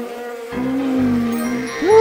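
Buzzing of flies as a cartoon sound effect: a steady drone with a lower note that wavers and glides in pitch.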